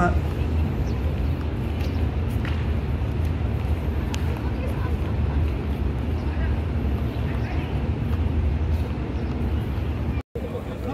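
Open-air ambience: a steady low rumble with faint, distant voices now and then.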